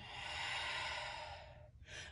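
A woman's long audible exhale, one breath that swells and then fades away over about a second and a half, with a short faint breath sound near the end.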